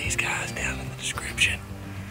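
A man whispering over background music that has steady low tones.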